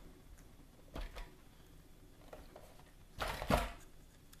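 Hands handling a rifle-scope mount against an airsoft rifle: a single light knock about a second in, then a louder cluster of knocks and clatter near the end.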